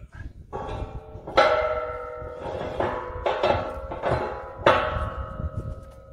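Steel bracket knocking against a steel implement frame as it is fitted into place. There are several clanks, each ringing on with a bell-like metallic tone, and the loudest come about a second and a half in and near five seconds.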